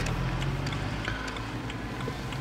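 BMW M3's engine running steadily at a low, even pitch, heard from inside the cabin while driving, with road noise underneath.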